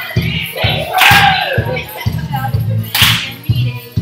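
Dance music with a steady beat and a bright, sharp accent about every two seconds.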